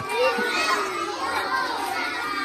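A crowd of young children's voices chattering and calling out all at once, many high voices overlapping.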